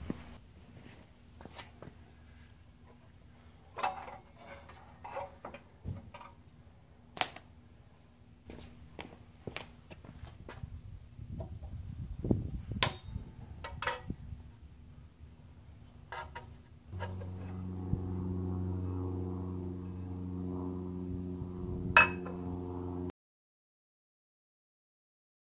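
Scattered clicks, taps and knocks of hand work on a Craftsman bandsaw's metal housing and pulleys. About 17 seconds in, an electric motor starts and runs with a steady pitched hum, which cuts off suddenly just before the end.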